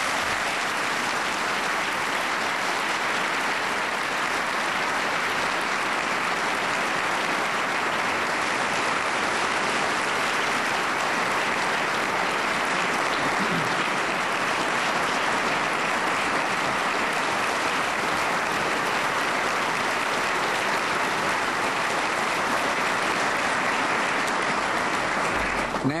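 Audience applauding, a long steady round of clapping at an even level throughout.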